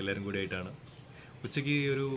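A steady high-pitched insect chorus, with a man's voice talking over it in the first moment and again from about one and a half seconds in.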